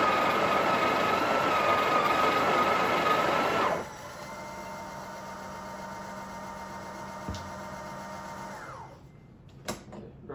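Breville Oracle Touch's built-in conical burr grinder running loud and steady with a wavering whine, grinding coffee at grind setting 15, then cutting off suddenly a little under four seconds in. A quieter mechanical hum follows for about five seconds, the machine's automatic tamping, and it winds down near the end, followed by a couple of sharp clicks.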